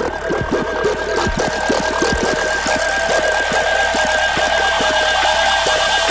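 Dubstep track in a build-up: held synth tones over a rapid patter of short falling zaps, with a hiss of noise swelling higher toward the end.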